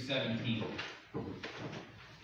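A person speaking from the front of a church, with a pause in the second half.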